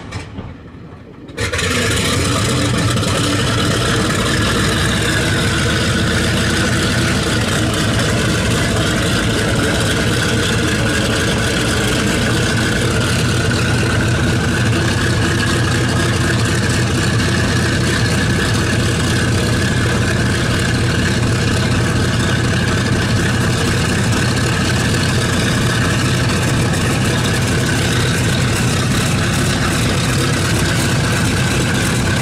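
Boeing B-29 Superfortress's Wright R-3350 18-cylinder radial engine catching on a start about a second and a half in, then running steadily at idle.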